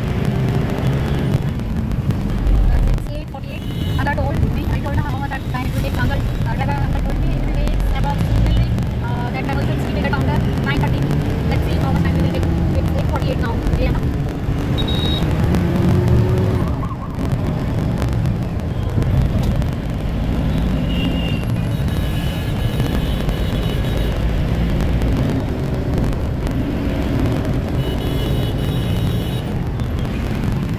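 Steady low engine and road rumble of a Tempo Traveller van driving through city traffic, with indistinct voices mixed in during the first half.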